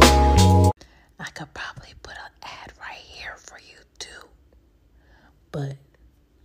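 Jazz intro music cuts off abruptly under a second in, followed by soft, whispered speech and a brief voiced sound near the end.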